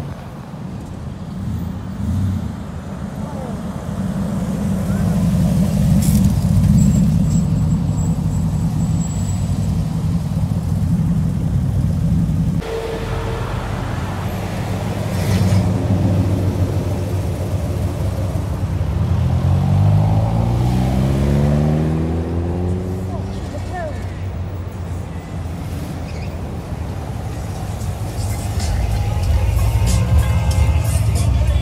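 Classic American cars driving past at low speed, their engines giving a steady low rumble that swells as each one goes by. About twenty seconds in, one car accelerates and its engine note rises steadily for a few seconds.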